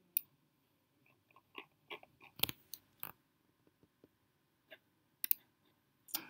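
Computer mouse and keyboard clicks: about a dozen short, irregular clicks, most of them bunched in the first half, with the two loudest near the middle.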